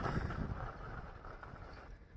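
Faint outdoor ambience with a low rumble of wind on the microphone, fading steadily.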